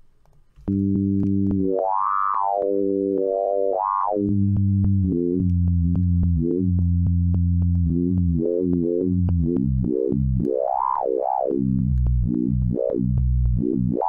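Serum software synthesizer playing a sequence of low sustained notes from a custom wavetable, windowed to remove discontinuities at its edges. The notes come in about a second in, and their tone repeatedly sweeps brighter and back down, giving the sound a vocal quality.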